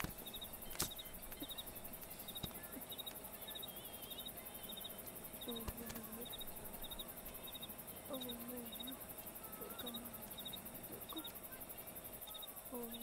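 Night-time ambience: crickets chirping in quick groups of three, repeating every second or so, over a steady faint hum. A few short low calls come and go every couple of seconds.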